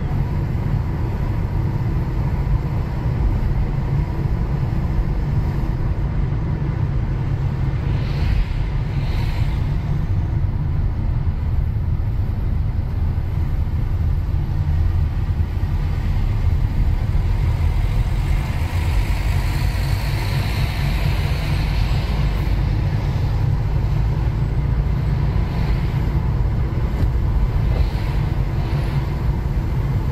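Car driving on city streets, heard from inside the cabin: a steady low rumble of engine and road noise, with brief swells of higher hiss about eight seconds in and again around twenty seconds.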